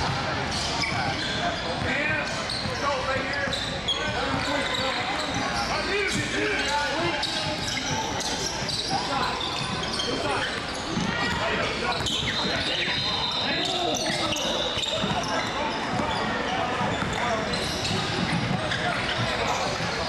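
Basketball gym ambience during a game: balls bouncing on the hardwood court amid overlapping chatter from players and spectators.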